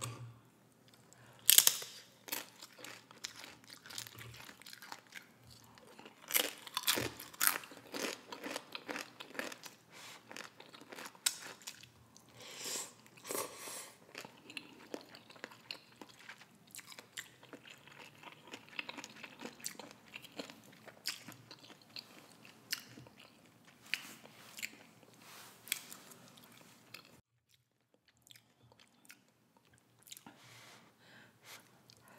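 Close-miked chewing of tortilla chips soaked in instant noodle soup, together with the noodles: a string of crisp crunches and wet chewing, the sharpest crunch about a second and a half in, thicker runs of crunching around the middle, and a brief pause near the end.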